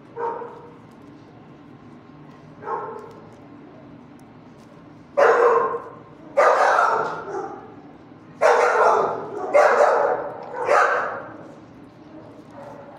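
Dogs barking in a shelter kennel: two softer barks in the first few seconds, then five loud barks in quick succession over the second half.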